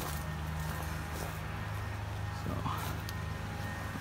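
A steady low hum holding a few fixed pitches, with one spoken word near the end.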